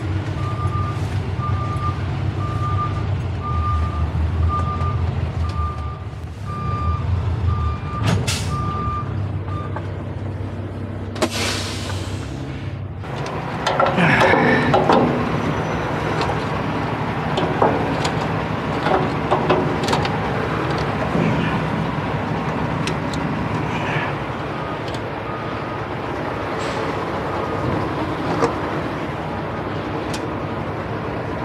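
A diesel semi-truck idles while a reversing alarm beeps at a steady pace of a little more than once a second for the first ten seconds. About eleven seconds in, a loud hiss of air is let out of the air brakes. After that come knocks and clunks of boots on the truck's metal steps and deck plate, with the engine still running.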